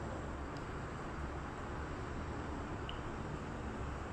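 Steady background rumble of road traffic, even in level throughout, with a couple of faint ticks.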